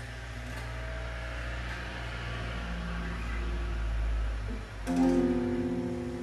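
Guitar playing a song's intro: low sustained tones that swell for about four seconds, then a new chord struck about five seconds in and left ringing.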